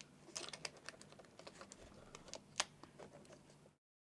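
Faint, scattered light plastic clicks and taps from a replacement laptop keyboard being handled as its ribbon cable is fitted into the motherboard connector, with one sharper click a little after two and a half seconds. The sound cuts off suddenly near the end.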